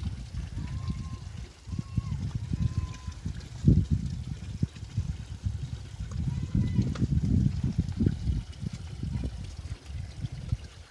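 Cattle drinking from a plastic tub trough: irregular wet slurping and sucking of water, with low rumbling noise throughout.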